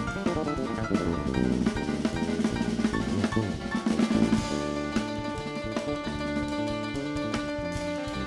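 Jazz drum kit solo, fast snare, tom and bass-drum strokes, closing about halfway through with a cymbal wash as the stage keyboard and electric bass come back in with held chords and bass notes.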